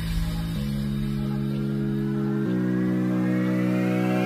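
Electronic music intro: held chords that change twice, with a slowly rising sweep above them.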